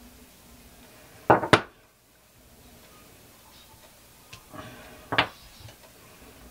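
Light knocks and taps of a wood-mounted rubber stamp being set down and pressed onto a painted gel printing plate: two quick knocks about a second in, a few faint taps, then another knock near the end.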